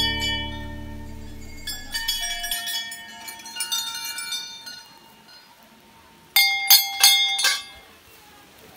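Hanging brass temple bells rung by hand. Ringing tones from an earlier strike die away over the first couple of seconds, more bells are struck lightly here and there, and a quick run of several loud strikes rings out just past the middle.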